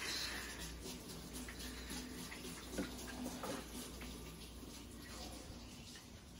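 Kitchen tap running steadily into a sink, an even hiss of water with a faint steady hum beneath it.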